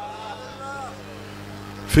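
A pause between loud chanted lines of a male reciter: faint voices and a steady low hum, with the reciter's amplified voice coming back in loudly near the end.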